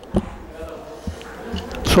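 Low room noise in a large hall with a faint steady hum, broken by a sharp knock just after the start and a softer knock about a second in; a man's voice starts at the very end.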